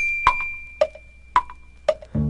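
A clock's tick-tock in the song's break: four sharp knocks about half a second apart, alternating higher and lower. Under them a single high bell-like ding rings on and fades away near the end.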